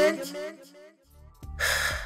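A spoken word trails off, then after a short pause a breathy gasp, a sharp intake of breath, near the end, with low background music under it.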